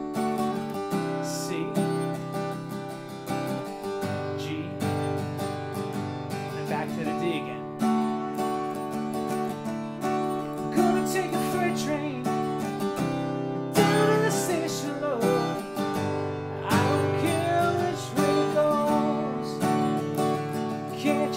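Steel-string acoustic guitar strummed through a repeating D, Cadd9, G chord progression. A wordless vocal joins over the strumming in the second half.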